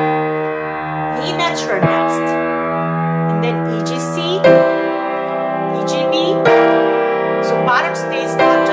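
Piano playing slow chords in G minor. A new chord is struck every second or two, and each one is left to ring into the next.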